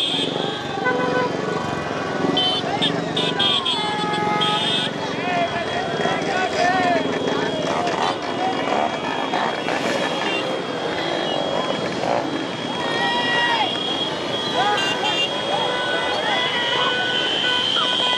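Many motorcycles and scooters running in a dense crowd, with horns tooting again and again over a continuous din of voices.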